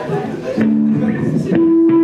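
Guitar plucked in a live room: a chord about half a second in, then a sharper pluck about a second and a half in whose note rings on steadily.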